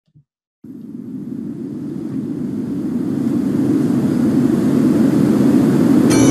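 A low rumbling swell on the soundtrack, fading in about half a second in and growing steadily louder.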